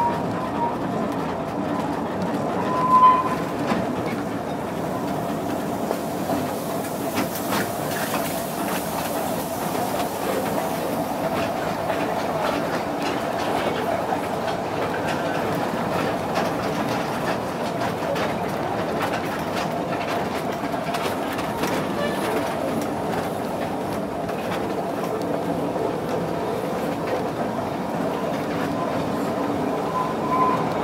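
Narrow-gauge passenger carriage running along the track behind a steam locomotive, heard from on board: a steady rumble of wheels with clickety-clack over the rail joints. A brief loud high note about three seconds in.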